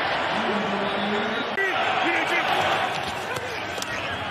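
Stadium crowd noise, a steady din, with a man's voice calling out faintly over it in the first couple of seconds.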